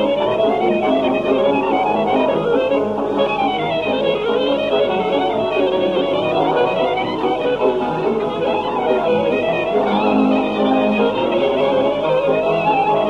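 Archival recording of a Hungarian Gypsy-band csárdás: the lead violin plays fast variations, running up and down again and again, over steady accompaniment.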